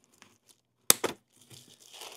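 A hand cutter snipping once: a single sharp click about a second in, with faint clicks and rustling of packaging around it.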